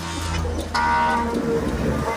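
A vehicle engine running low, with a short horn-like toot about three-quarters of a second in, as a level crossing barrier lifts.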